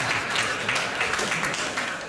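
Studio audience applauding, the clapping easing off slightly near the end.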